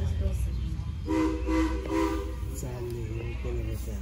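Steam locomotive whistle sounding several notes at once, two blasts about a second in, then a fainter held note, over a low steady rumble: the departure signal, the train's journey about to begin.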